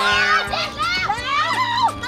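High-pitched voices calling out over background music with steady held notes.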